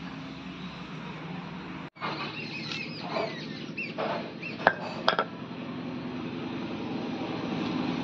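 Green and dried chillies being ground to a paste on a flat stone grinding slab with a stone roller (shil-nora): steady stone-on-stone scraping, with a few sharp knocks about five seconds in. Bird chirps sound in the background.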